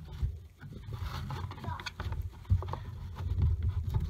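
Gloved hand handling a plastic engine coil cover and pushing a rubber fuel line aside: low rubbing and scuffing with a few light plastic clicks.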